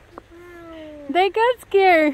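A young child's wordless vocal sounds: a soft click, then one long low falling note, then two short rising-and-falling cries near the end.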